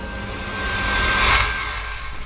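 Ambient soundtrack music with a cinematic whoosh that swells, with a deep low rumble, to its loudest about a second and a half in, over a steady high held tone.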